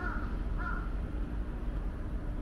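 A crow cawing twice, short harsh calls about half a second apart, over a steady low background rumble.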